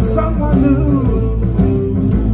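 Live blues band playing an instrumental passage: electric guitars over drums, with no singing.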